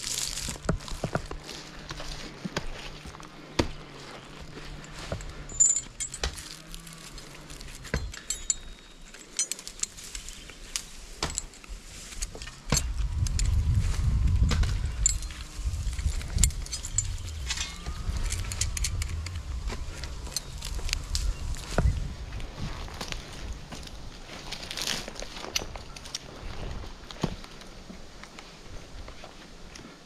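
Metal climbing and rigging hardware clinking, with scattered knocks and rustles as a roped log section is handled up in the tree. A louder low rumble swells about 13 seconds in and fades over several seconds.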